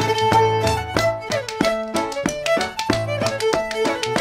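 Cape Breton fiddle playing a quick run of notes in a traditional tune, with spoons clicking sharply in time.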